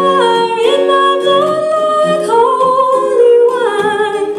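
A woman singing long held notes that glide from one pitch to the next, over acoustic guitar.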